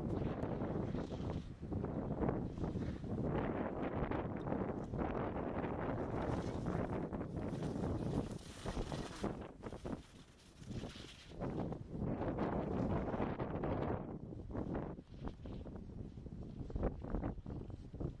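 Gusty wind buffeting the microphone, with the scrape of ski edges carving on hard-packed snow as racers pass through the gates.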